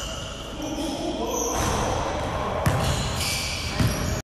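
Basketball bouncing on a hardwood gym floor, with two sharp bounces, one a little under three seconds in and one near the end.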